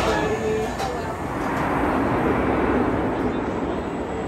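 Roller coaster train rolling along the station track: a rushing rumble of wheels on steel that swells about a second in and eases off toward the end, with riders' voices underneath.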